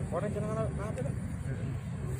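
A man's voice, faint, speaking briefly in the first second over a steady low rumble.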